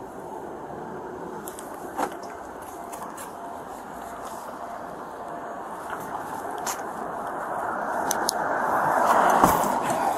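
Street noise picked up by a body-worn camera, with a few sharp clicks of handling, as a steady rushing hiss. The hiss swells to its loudest near the end as a vehicle passes on the road.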